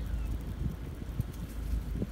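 Low, uneven outdoor rumble with faint scattered ticks and no voice.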